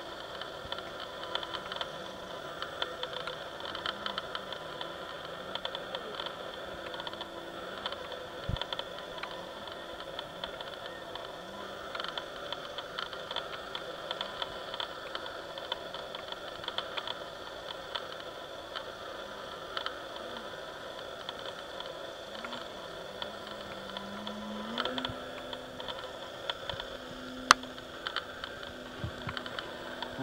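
A steady hiss with the faint buzz of an electric RC aerobatic plane's 16x8 propeller, its pitch wandering and rising with the throttle in the second half. A couple of sharp clicks, the loudest near the end.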